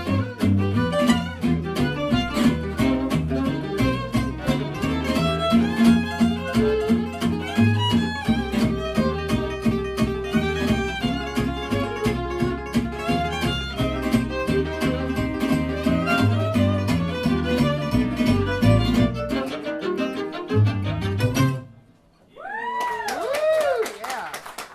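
Live gypsy jazz string band: a fiddle leads over acoustic guitars and upright bass, then the tune stops about 21 seconds in. After a short gap, a few rising-and-falling calls follow near the end.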